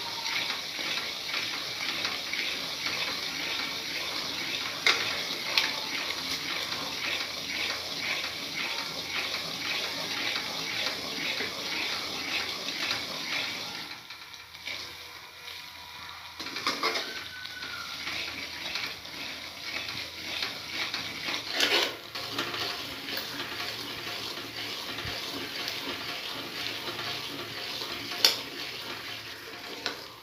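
A steel ladle stirring and scraping semolina around a metal kadhai, in quick regular strokes over a steady sizzling hiss from the hot pan. About halfway through it goes quieter, then the stirring resumes with a few sharper knocks of the ladle against the pan.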